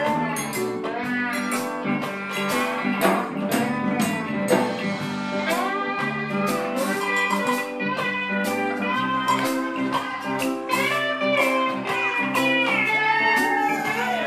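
Live band playing an instrumental passage: an electric guitar lead with bent notes over bass guitar and drums.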